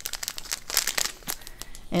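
Small clear plastic bags of diamond-painting drills crinkling as they are handled and lifted, with a run of quick, irregular crackles.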